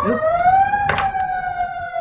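A siren wailing, its pitch rising for under a second and then slowly falling. A single sharp click comes about a second in.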